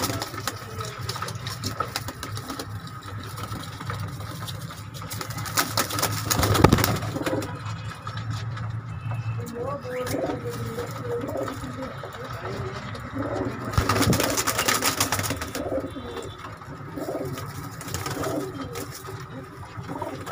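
Young Teddy Golden cross pigeons cooing repeatedly, short low calls crowding together in the second half. Two louder flurries of wingbeats break in, the loudest about six seconds in and another around fourteen seconds.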